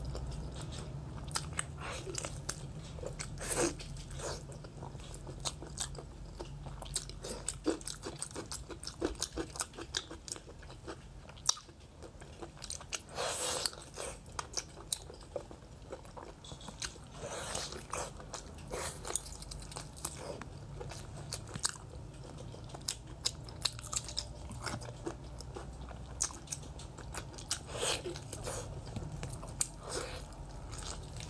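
Close-up wet chewing and biting of sauce-coated braised pork, with many short sticky clicks and a few longer, louder smacking bursts.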